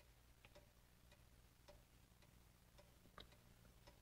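Near silence with a clock ticking faintly and evenly, about two ticks a second.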